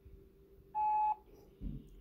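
Voicemail record tone through a phone's speakerphone: one short steady beep, under half a second long, about three-quarters of a second in, signalling that message recording has begun.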